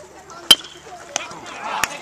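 Metal baseball bat striking a pitched ball: one sharp, loud crack with a short ring, about half a second in. A smaller knock follows about a second later, and voices rise near the end.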